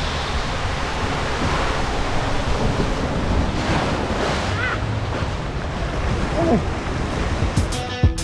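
Steady rush of water and tube noise as a rider on an inner tube slides down a waterslide, running into the churning splash of the runout lane.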